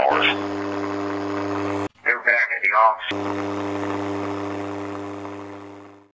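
AM radio receiver giving a steady hiss with a low hum. About two seconds in it cuts off and a short garbled voice fragment comes through for about a second. The hiss and hum then return and fade away near the end. The fragment is captioned as "sei una persona apposto" and presented as a spirit's reply.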